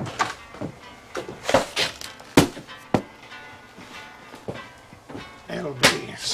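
A few sharp knocks, the clearest about two and a half seconds in, again a little later and once near the end, over faint background music.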